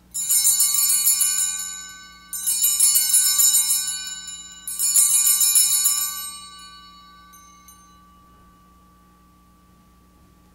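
Altar bells shaken three times, about two seconds apart, marking the elevation of the chalice at the consecration. Each ring is a jingling cluster of high tones that fades over a couple of seconds, and the last dies away slowly.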